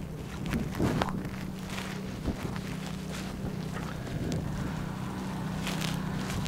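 Wind buffeting the microphone while a grass fire crackles with scattered sharp pops. From about a second in, an engine runs with a steady low hum underneath.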